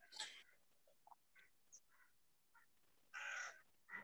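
Near silence broken by a few faint, short harsh sounds, one right at the start and the clearest, lasting about half a second, about three seconds in.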